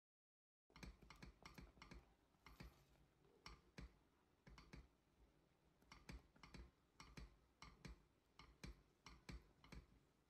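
Near silence, with faint irregular clicks and small pops from a pot of thick chocolate brigadeiro being stirred with a silicone spatula as it cooks, starting just under a second in.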